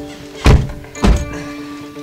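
Two heavy thunks about half a second apart, pickup truck doors slamming shut, over background music holding steady sustained notes.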